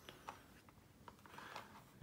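Near silence: room tone, with a couple of faint clicks in the first second.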